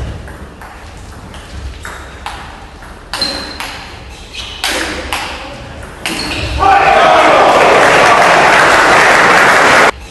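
Table tennis rally: a celluloid ball clicking off rubber bats and the table, a hit every half second or so. About two-thirds of the way through, a loud wash of noise with voices in it, likely the crowd, swamps the clicks and cuts off abruptly at the end.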